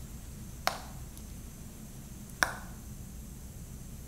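Two sharp clicks, a little under two seconds apart, the second slightly louder, over a faint low hum.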